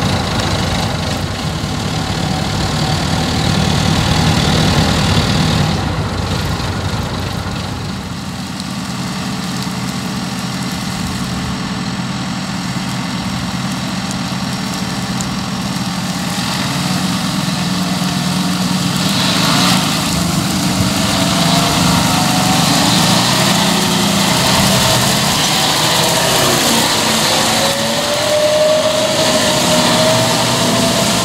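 Diesel engines of farm machinery running as they drive across fields, first a telehandler carrying a bulk bag, then a John Deere tractor pulling a trailer. In the second half the engine note rises several times, most clearly near the end.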